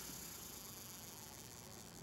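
Faint, steady hiss of open-water ambience over calm water, with no splash or jump.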